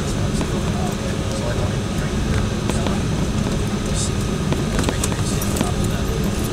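Steady cabin noise inside an Embraer E-170 taxiing: the low rumble of its GE CF34 turbofans at low power and the cabin air, with a faint steady hum and a few light ticks.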